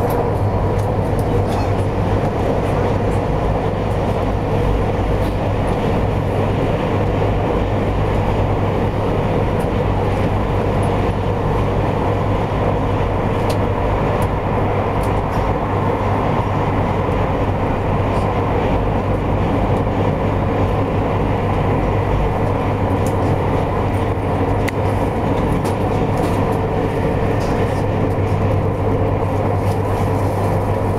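200 series Shinkansen in motion, heard from inside the passenger car: a steady running rumble with a constant low hum and a few faint clicks.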